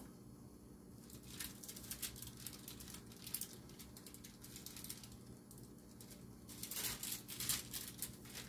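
Crinkling of a thin wrap being peeled and lifted off a glass bowl of risen dough, in scattered crackles that come thicker about a second in and again near the end.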